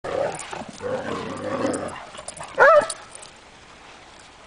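Irish wolfhounds play-fighting, with rough growling for about two seconds, then one short, loud, high-pitched cry from a dog partway through.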